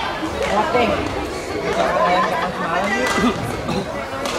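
Overlapping chatter of several voices echoing in a sports hall, with a few sharp clicks of rackets striking the shuttlecock during a badminton rally.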